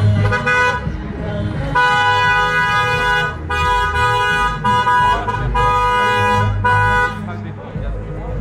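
Car horn honking in a run of long, steady blasts, about five of them. The first is the longest.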